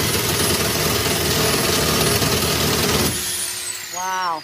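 Cordless reciprocating saw running steadily as it cuts through the metal around an ATM cabinet's lock. It stops about three seconds in, and the motor's high whine falls away as it spins down.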